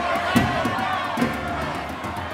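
Large mixed chorus singing full-voiced together, with sharp hand claps on the beat, twice in two seconds.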